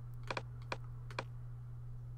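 Light clicks of a computer mouse: a quick pair, then two single clicks, over a steady low electrical hum.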